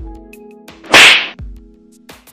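A loud, sharp whip-like crack about a second in, over background music with low beats.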